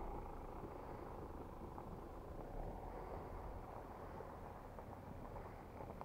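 Faint rumble of an SUV driving away along a dirt track, its engine and tyres slowly fading.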